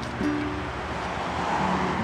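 A car passing on a paved road: a steady tyre-and-engine hiss that swells a little toward the end.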